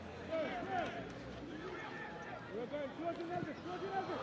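Faint, distant shouts and calls from football players on the pitch, heard through the match microphones during open play.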